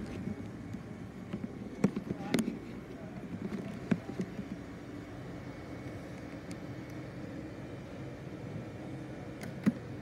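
Steady low hum of commercial laundry dryers running, with faint voices in the background and a few sharp knocks about two and four seconds in.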